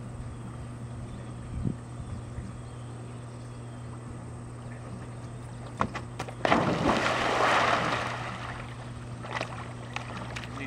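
A large dog's feet knock a few times on a wooden dock, then a big splash about six and a half seconds in as the dog leaps into the pool, the water churning for a second or two before settling. A steady low hum runs underneath.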